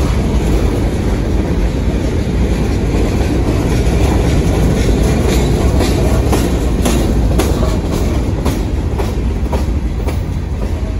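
Freight cars rolling slowly past at close range: a steady low rumble of the train, with sharp wheel clicks and clanks that come more often in the second half.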